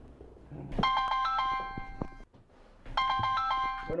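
Mobile phone ringtone: a short melodic chime phrase plays twice, about two seconds apart, and the second ring stops as the call is answered.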